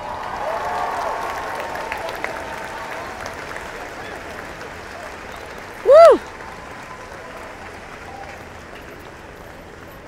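Audience applauding at the end of a jazz band's number, the applause slowly dying away. About six seconds in, one loud whoop from a listener nearby rises and falls in pitch; a fainter one comes near the start.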